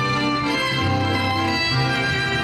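Live band playing a dance tune led by violins, over a bass line that steps between long held notes.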